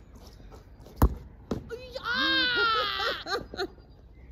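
A sharp, loud knock about a second in and a smaller knock half a second later, then a long, high-pitched cry from a girl that falls slightly in pitch, followed by a few short vocal sounds.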